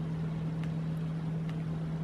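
A steady low electrical hum at one pitch, with a few faint clicks as buttons on a handheld LED-light remote are pressed.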